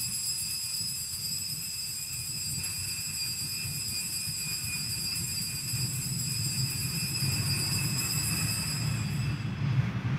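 A steady high tone with several evenly spaced overtones, held for about nine and a half seconds and then stopping, over a continuous low rumble.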